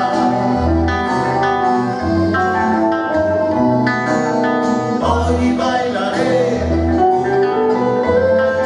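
Live band music: several acoustic guitars playing over a deep, repeating bass line, with long held notes above.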